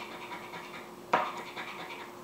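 A scratch-off lottery ticket being scratched by hand, its coating rasped away in quiet scraping strokes, with one sudden louder burst about a second in.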